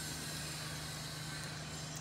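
A steady low machine hum with a constant low tone and a faint high hiss, unchanging throughout.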